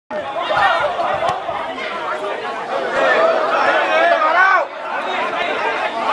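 Several voices talking over one another, the unclear chatter of people at a football pitch, with a brief sharp knock a little over a second in.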